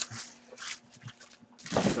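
A few faint, short rustles in a quiet room, then a louder breath near the end as a man starts to speak.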